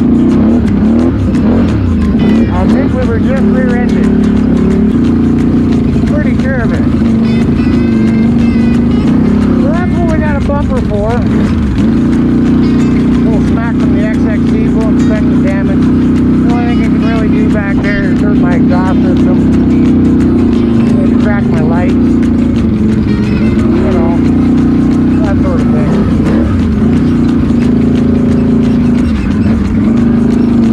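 Can-Am Renegade XMR 1000R ATV's V-twin engine running steadily at trail-riding speed, a constant drone, with background music and a singing voice over it.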